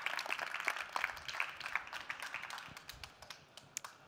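Audience applauding, the clapping thinning out and dying away over about three seconds, with a few last scattered claps near the end.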